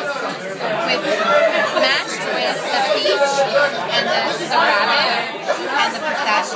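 Indistinct, overlapping chatter of several people talking at once in a busy restaurant dining room; no single clear voice stands out.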